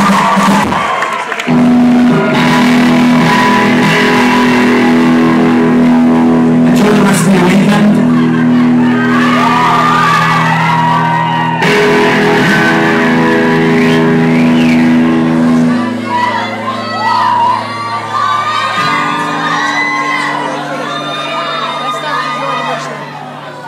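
Live rock band playing loud amplified music in a hall, held chords coming in sharply about a second and a half in and the bass dropping away later on. Crowd shouting and whooping over it.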